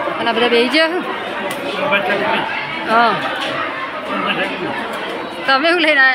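Chatter of many people talking at once, with a nearer voice rising above it at the start, about three seconds in and near the end.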